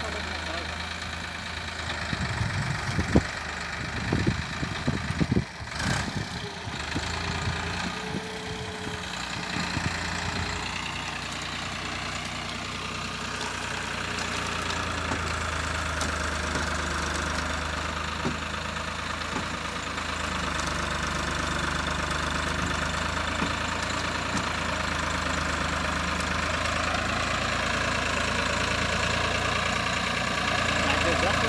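New Holland tractor's diesel engine running steadily while hauling two trailers heavily loaded with sugarcane, slowly growing louder as it comes closer. A few sharp knocks sound in the first several seconds.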